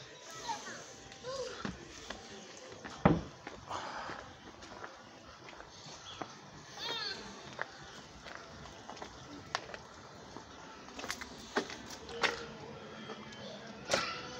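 Distant street sound: radio music carrying from up the block, mixed with faint voices of children and people. A single sharp thump about three seconds in is the loudest sound, and a few sharp clicks come near the end.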